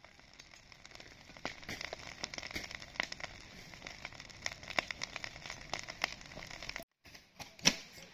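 A heap of freshly cut green cannabis plants burning, with dense, irregular crackling and popping. Near the end the sound breaks off briefly, and a few louder snaps follow.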